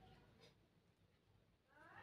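Near silence: room tone, with a faint rising tone just before the end.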